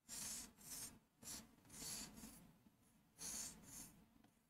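Marker pen drawing on a board: a faint run of about seven short scratching strokes.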